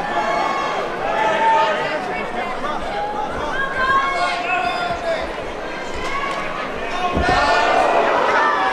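Several voices shouting over grappling in an MMA cage, with a thud about seven seconds in as a body hits the mat in a takedown.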